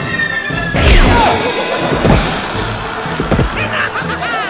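A loud crash about a second in, followed by a couple of smaller thuds, over background music.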